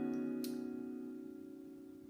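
Capoed acoustic guitar chord, strummed once just before, ringing out and fading away slowly. There is a light click about half a second in.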